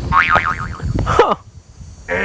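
Comic cartoon 'boing' sound effect: a quick wobbling warble of pitch, then a falling glide, with a short spoken 'huh' about a second in.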